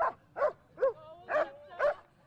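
Police dog barking five times in quick succession, about two barks a second, just after being called off a bite sleeve in aggression-control training.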